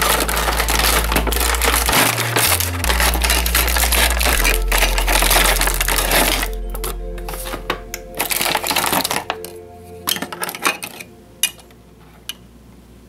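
Plastic packaging rustling and crinkling as a die-cast metal model airliner is unpacked from its box, with sharp clicks and taps of the plastic tray and stand in the second half. Background music with a steady bass line plays under it and fades out about halfway.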